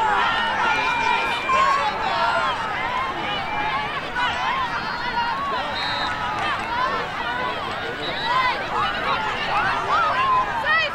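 Many high-pitched girls' voices calling and shouting at once, overlapping so that no single voice or word stands out.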